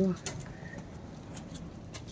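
The last moment of a woman's spoken word, then low steady background noise with a few faint clicks.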